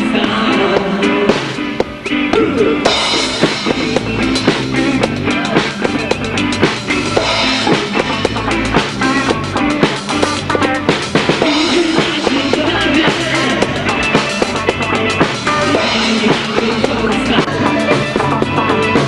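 Band music carried by a drum kit: bass drum and snare keep a steady beat. The sound grows fuller and brighter about three seconds in.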